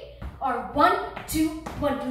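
A woman speaking, with soft thuds of dance steps on a wooden floor underneath.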